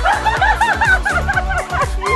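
Several women laughing hard together over background music with a steady thumping beat.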